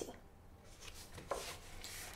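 Faint rustling and rubbing of a clipboard with paper on it as it is lifted from the lap.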